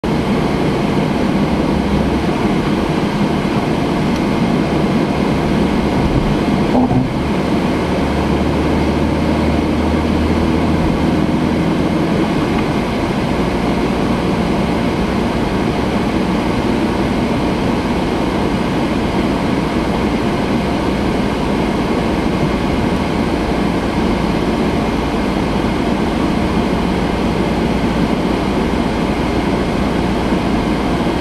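Steady road and tyre rumble with engine hum, heard inside the cabin of a car driving at speed.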